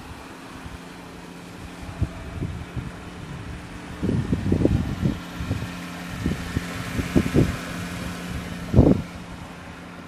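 Wind buffeting a handheld phone's microphone in irregular low gusts, the strongest about four seconds in and again near the end, over a steady low hum.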